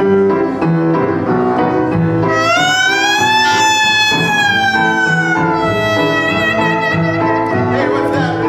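Small traditional jazz band playing an instrumental opening. Double bass and piano keep the beat, and a horn holds one long note from about two seconds in that bends up slightly, slowly sinks and ends near the end.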